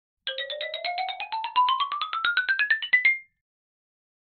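A short electronic intro jingle: a quick run of short notes, about ten a second, climbing steadily in pitch for about three seconds and ending on a brief held high note.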